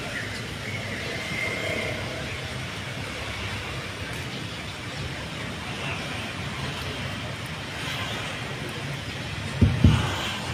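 Steady room noise in a hall with faint, indistinct voices in the background, and two loud low thumps close together just before the end.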